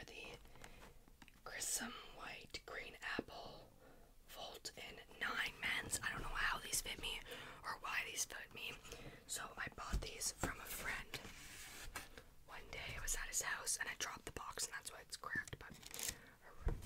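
Close-miked whispering, with soft taps and scrapes from hands handling cardboard shoeboxes.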